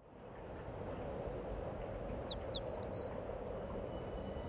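Bird chirping: a quick run of short, high whistled notes, several sliding downward, starting about a second in and lasting about two seconds. Beneath it a steady background hiss fades in at the start.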